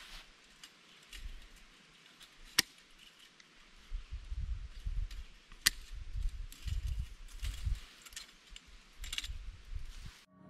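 Fencing pliers working at wire on a steel T-post: light metal clinks with two sharp snaps, one about two and a half seconds in and one near six seconds. Low rumbling from about four seconds in.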